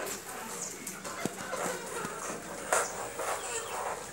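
Domestic hens clucking, with a few sharp clicks scattered through; the loudest click comes a little under three seconds in.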